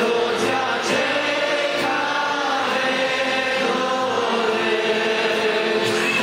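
Congregation singing a hymn together, many voices holding long, slow notes.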